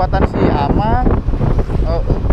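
Wind buffeting the microphone of a moving motorcycle, a steady low rumble, with a person's voice speaking over it in short phrases.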